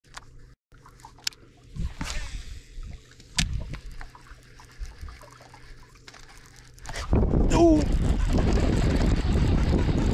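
Light water splashes and small clicks from fishing tackle. About seven seconds in, a loud, steady rushing noise starts and a man shouts as a redfish is hooked and fights at the surface.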